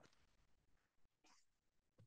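Near silence: room tone with a couple of faint, brief rustles.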